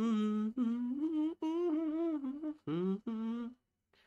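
A man humming a tune in a string of short melodic phrases, stopping about three and a half seconds in.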